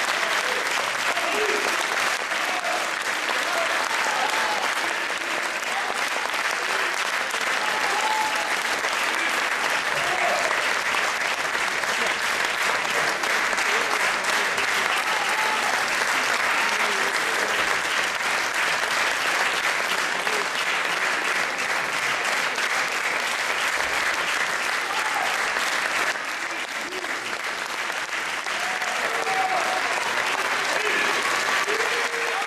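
Concert audience applauding steadily, with a short dip in the clapping near the end.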